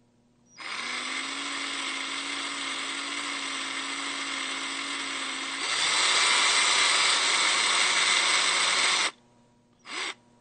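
Cordless drill running with a bit in its keyless chuck: a steady motor whine that steps up to a faster, louder speed a little past halfway, then stops about nine seconds in, followed by a brief blip of the trigger near the end.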